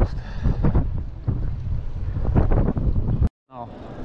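Wind buffeting the microphone of a handlebar-mounted camera on a moving bicycle: a loud, low, gusty rumble. It breaks off for a moment a little after three seconds in and comes back quieter.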